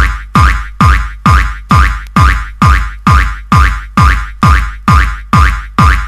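Old-school techno in a DJ mix: a drum-machine kick drum on every beat, a little over two a second, each hit dropping sharply in pitch, over a steady high synth note.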